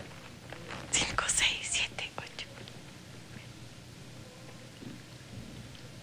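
Soft whispering, short breathy hisses from about one to two and a half seconds in, then quiet room tone.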